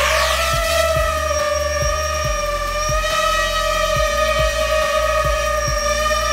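Quadcopter drone's motors and propellers whining steadily in a hover, the pitch levelling off right after a rising spin-up at the very start. Background music with a steady beat plays underneath.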